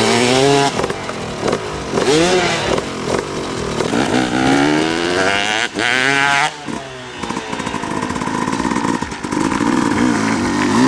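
Motocross bike engine revving in repeated blips, then rising to a hard, climbing rev about six seconds in as the bike goes up the take-off ramp. After that the note drops to a lower, steadier drone.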